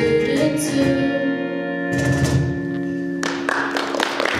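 The final chord of a song on acoustic guitar and cajon: a last strummed chord with a cajon hit about two seconds in, left to ring, then audience applause breaking out near the end.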